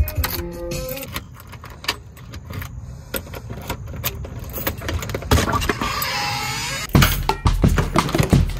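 Keys jangling and clicking as a key turns in a car's ignition and then in a door's knob lock, with short clicks and knocks throughout over background music.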